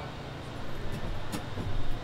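Steady low hum and rumble of brewery equipment, with a single faint click a little past halfway.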